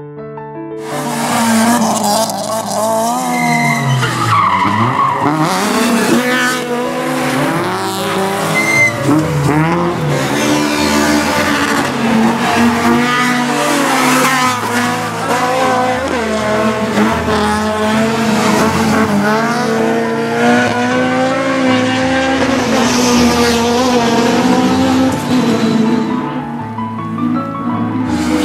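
Honda Civic rally car's VTEC four-cylinder engine revving hard, its pitch climbing and dropping over and over through gear changes and corners, with music underneath.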